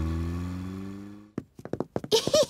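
A cartoon car engine hums steadily, rising slightly in pitch and fading away over about a second as the car drives off. It is followed by a few quick, light taps.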